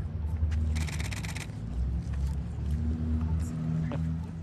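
A low, steady engine hum holding several pitches, typical of a vehicle idling. About half a second in comes a crinkling rustle of something being handled, lasting about a second.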